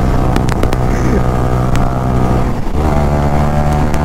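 Sport motorcycle engine running at steady revs at road speed, heard from the rider's seat. About two and a half seconds in the note breaks briefly, then settles again at a different pitch.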